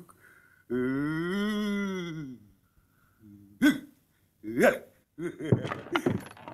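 A man's voice holding one long drawn-out call that rises and falls in pitch, then three short hiccups about a second apart.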